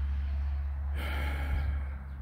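A man's audible breath, lasting about a second and starting about halfway in, over a steady low hum.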